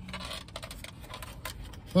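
Quiet eating sounds: small clicks and scrapes of a plastic spoon against a takeout dish of ice cream, with a hummed 'mm' right at the end.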